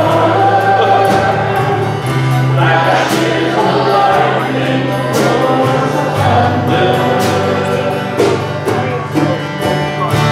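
Church congregation singing a worship song together over instrumental accompaniment, with sustained low bass notes under the voices.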